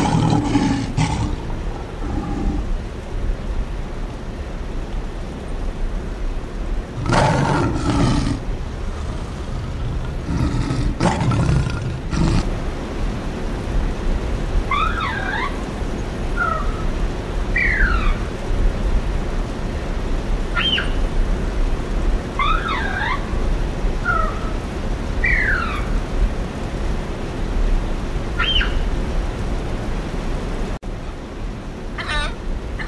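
Lion roaring in three long, loud roars, one at the start, one about 7 seconds in and one about 11 seconds in. After that come short high chirps and whistled calls, some gliding down in pitch, over a steady low background rumble.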